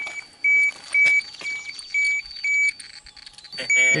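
Handheld radiation dosimeter beeping: short high beeps about two a second, with a brief break about three seconds in. The beeping signals gamma radiation from a contaminated spot on the Ferris wheel, and it comes faster the closer the meter is held to the spot.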